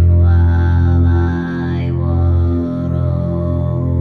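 A woman throat singing in kargyraa style: a deep growling drone, with the false vocal folds sounding an octave below the voice. Long held notes are broken by brief pauses, and whistly overtones shift above the drone as the mouth shape changes.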